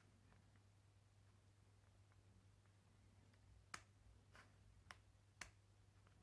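Near silence with a steady low hum; in the second half, four faint sharp clicks about half a second apart, from hands handling the opened cordless impact wrench's plastic housing and switches.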